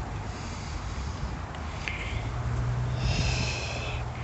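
A person breathing out hard through the nose, close to the microphone, for about the last second, over a steady low hum.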